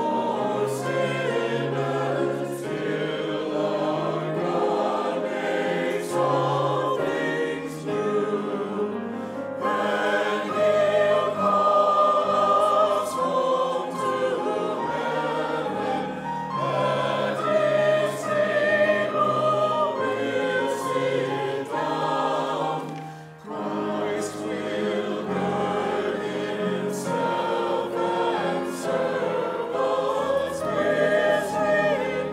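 Mixed church choir singing an anthem with grand piano accompaniment, with a brief break between phrases about 23 seconds in.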